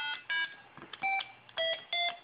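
Homemade microcontroller music synthesizer playing short electronic beep notes through a small speaker as keypad keys are pressed: about four brief notes of different pitches with short gaps between them, the later ones lower.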